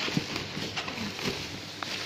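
A few light, irregular knocks and clicks from objects being handled, with faint rustling.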